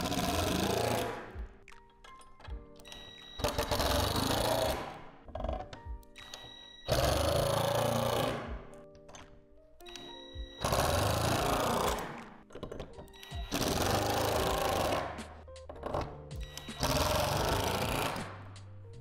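Cordless power driver running in six short bursts, each about one and a half seconds, driving screws through a metal header bar into a plastic shed gable. Soft background music plays between the bursts.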